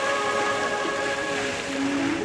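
Music from a musical fountain's loudspeakers holds one long chord that fades out about three-quarters of the way through. Under it runs the steady hiss of the fountain's water jets spraying.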